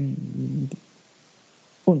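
A man's voice: a low, steady hummed "mm" lasting under a second, then a spoken word beginning near the end.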